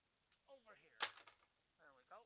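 A single sharp click about a second in, with faint murmured voice sounds around it.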